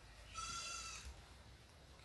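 A single short, faint, high-pitched animal call, heard about a third of a second in and lasting under a second.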